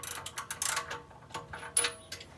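Ratchet wrench clicking as it turns out the spark plug of a Predator 212 Hemi engine: a quick run of clicks, then a few single clicks. The plug is already loose and turns out easily.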